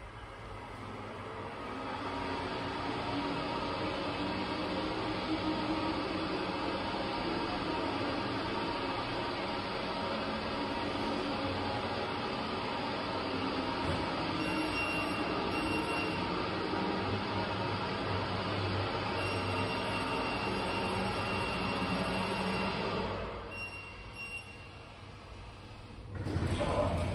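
Otis hydraulic elevator car travelling in its shaft, heard from a ceilingless cab: a steady rushing ride noise that builds over the first two seconds. It drops away about 23 seconds in as the car slows and stops at the landing.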